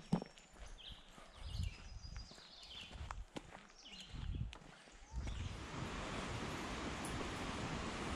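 Footsteps on a dirt forest trail: irregular soft thuds. About five seconds in, a steady rushing noise takes over and becomes the loudest sound.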